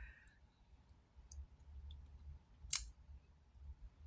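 A quiet pause with a faint low hum, broken by a few small ticks and one sharp, short click about three-quarters of the way through.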